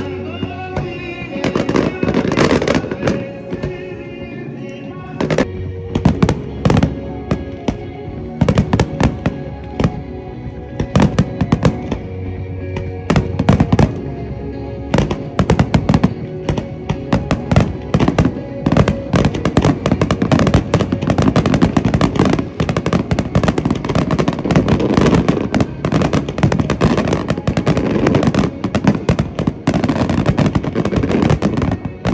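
Aerial fireworks display: separate shell bursts at first, building from about halfway into a dense, nearly continuous barrage of bangs and crackling. Music with long held notes plays underneath, clearest while the bursts are still sparse.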